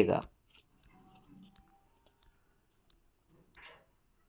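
A few faint, scattered clicks of a stylus tapping a tablet screen, following the end of a spoken word at the very start.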